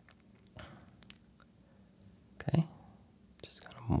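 Mostly quiet room tone with a few soft mouth noises and breaths close to a microphone, a few faint clicks about a second in, and a voice starting near the end.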